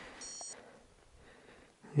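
Digital hand-held scale giving one short, high-pitched electronic beep.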